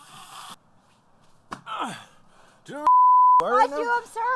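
A sharp nasal snort at the start as a line of powder is snorted off a CD case, then a half-second censor bleep, one steady tone, about three seconds in, followed by voices.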